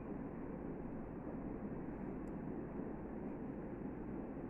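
Steady low background noise, a constant even rumble with no distinct clicks standing out.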